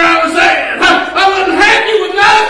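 A man preaching in a loud, strained shout: short, rapid phrases follow one another with no pause.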